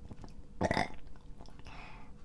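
A man's short, breathy burp about half a second in, after a sip of strong spirit that he says gives him heartburn, followed by a fainter breath near the end.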